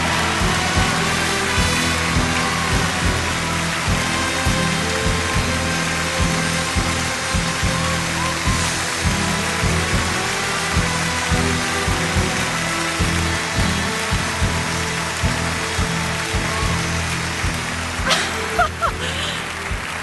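Orchestra playing steady walk-up music over continuous applause from a large audience as the winner is announced.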